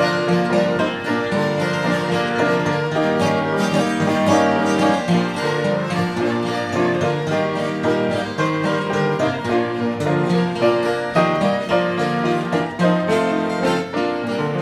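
Fiddle, acoustic guitar and piano playing an instrumental tune together, the fiddle bowed over strummed and picked guitar.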